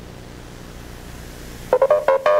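Electronic dance music drops to a quiet break holding only a low, steady hum. About three-quarters of the way through, a loud, punchy synth riff of short pitched stabs comes in suddenly.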